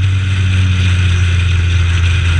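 Honda CRX race car's four-cylinder engine running hard at speed, heard from inside the cabin with road and wind noise. Its note drops slightly right at the start, then holds steady.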